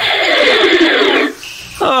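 Electronic power-down sound effect: a falling whine that slides down in pitch for just over a second, then cuts off as the power goes out.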